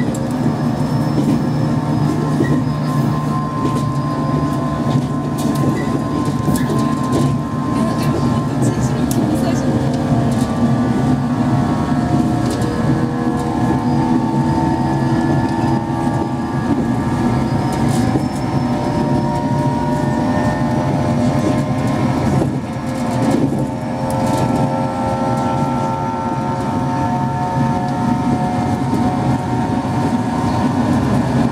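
JR East 115 series EMU running under power, its MT54 traction motors whining in several steady tones over a low running rumble, with short clicks from the wheels on the rails. The whine is the motors working to climb a grade.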